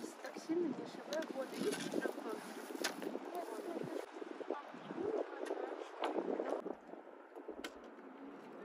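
Quiet, indistinct voices talking, with a few sharp clicks or taps scattered through.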